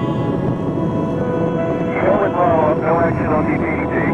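Steady low roar of Space Shuttle Atlantis's rockets during ascent, its solid rocket boosters and three liquid-fuel main engines at full throttle after throttle-up. About two seconds in, an indistinct radio voice joins, over background music.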